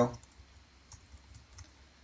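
Faint, scattered keystrokes on a computer keyboard as code is typed.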